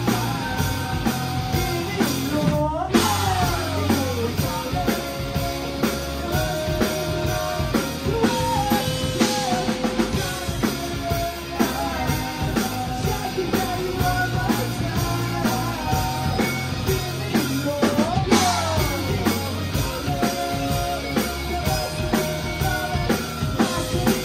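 Live rock band playing: two electric guitars and a drum kit, with a male lead vocal singing held notes over them. Twice a sweeping drop in pitch cuts through, about three seconds in and again near eighteen seconds.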